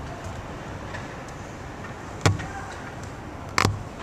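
Ice hockey play in an arena: two sharp cracks of stick and puck against the ice and boards, one about two seconds in and a louder one near the end, over steady rink noise.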